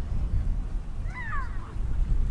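A short, high-pitched call that falls in pitch, about a second in, over a steady low rumble.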